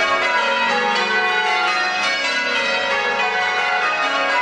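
English church bells being change-rung: several bells struck in turn in a continuous peal, their ringing tones overlapping.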